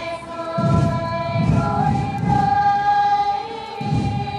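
A choir singing a slow hymn in long held notes, the pitch stepping from one sustained note to the next.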